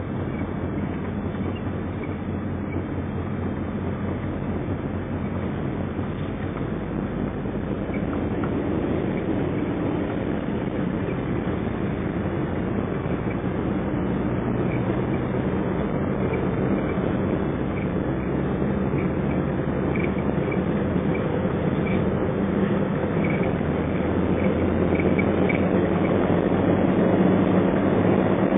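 Car interior noise while driving: a steady rumble of engine and tyres on the road in the cabin, slowly growing louder.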